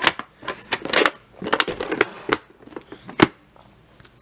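Hard plastic clicking and clattering as a VHS cassette is pushed into a clear plastic clamshell case and handled, with one sharp click about three seconds in.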